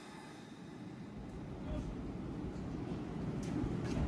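A Keisei 3600-series electric train pulls away from the platform. Its running rumble grows steadily louder as it gathers speed, with two sharp clicks near the end.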